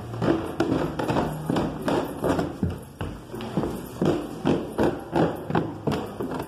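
A quick, slightly uneven series of knocks or taps, roughly three a second.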